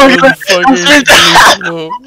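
Loud, excited voices on a voice call: a shout of "oh my God" followed by drawn-out cries without clear words.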